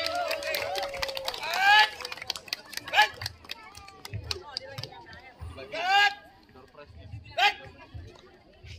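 A man shouting parade-drill commands to a squad: a long drawn-out call that ends about a second in, then several short, sharp shouts spaced a second or more apart, over faint background chatter.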